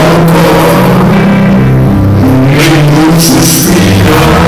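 Live rock band playing loud, with electric bass guitar carrying a low line that steps from note to note over a drum kit, and cymbal crashes a few times.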